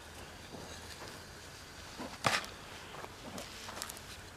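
Hand trowel digging and scraping in dry, freshly tilled garden soil: a few short gritty scrapes, the loudest a little past halfway.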